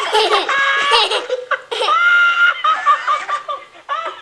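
A young child laughing hard, with high-pitched squeals, two of them held for about half a second each.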